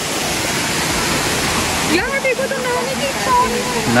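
Shallow rocky stream and waterfall water rushing over stones, a steady, even hiss. A voice speaks briefly over it from about halfway through.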